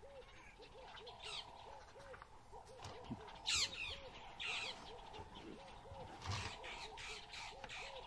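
Wild birds calling in dry bush: a short arched note repeated about two or three times a second throughout, with several falling calls laid over it, the loudest about three and a half seconds in.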